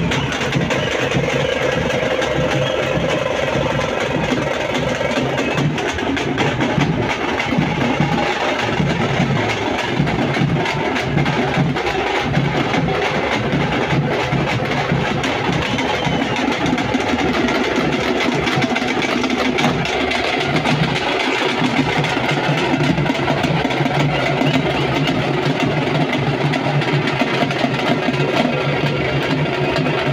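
Frame drums beaten by hand in a dense, continuous rhythm, loud and unbroken throughout.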